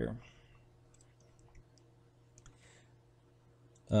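A few faint clicks of a computer keyboard and mouse as a four-digit code is typed into a field, over a low steady hum.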